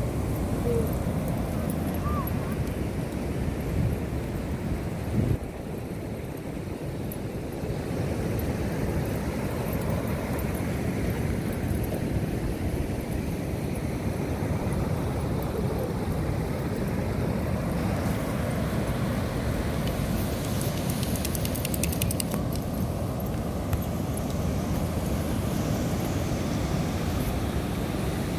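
Steady noise of ocean surf breaking, mixed with wind on the microphone.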